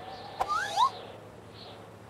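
A short cartoon sound effect: a sharp click followed right away by two quick rising, whistle-like squeaks, then quiet.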